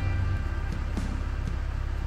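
The engine of a heavy lifting machine running steadily with a low rumble, which eases slightly about a third of a second in.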